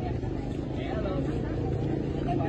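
Several people talking on a street, with a vehicle engine running steadily underneath from about halfway through.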